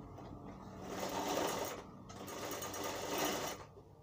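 Sewing machine stitching a seam on a kurta panel, running in two bursts of about a second and a second and a half with a brief stop between them.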